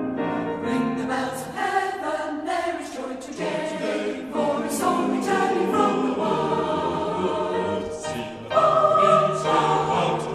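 Salvation Army songster choir singing a hymn arrangement in several parts, swelling louder about eight and a half seconds in.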